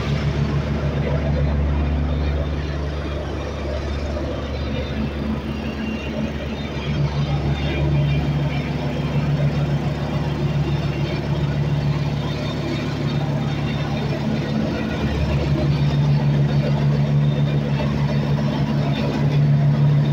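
Petrol-engined vibratory plate compactor running steadily, its plate pounding the loose sandy soil of a floor base to compact it, with a low hum and a fast even pulse. It gets louder partway through.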